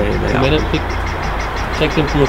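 A steady low motor rumble, with brief low voices over it.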